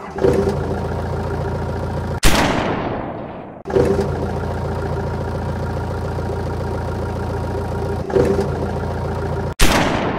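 Sound effect of a tank engine running steadily, broken twice by a sudden blast that dies away over about a second: once about two seconds in and again near the end.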